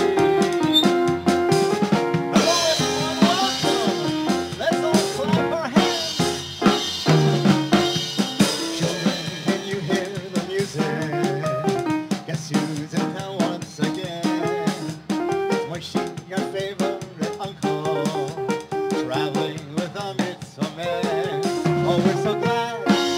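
Live band playing an upbeat instrumental: a drum kit keeps a steady beat on snare and bass drum under a bouncing keyboard melody.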